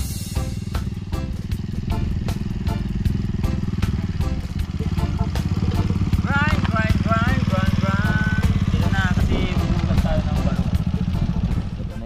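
Motorcycle-and-sidecar engine running steadily as it drives up close, dropping away right at the end.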